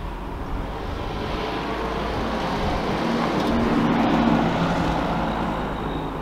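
A motor vehicle going past, its engine and tyre noise building to a peak about four seconds in and then fading.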